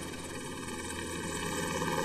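Helicopter flying overhead: a steady drone of rotor and engine that grows slowly louder.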